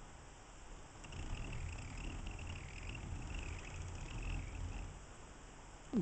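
Hand-cranked winch of a homemade mast raising system hauling a sailboat mast up through a block and tackle. It makes a faint low rumble with a wavering squeak above it, starting about a second in and stopping shortly before the end.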